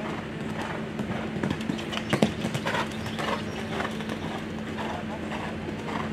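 A horse's hooves cantering on sand footing, a run of uneven thuds, with one sharp knock about two seconds in. A steady low hum runs underneath.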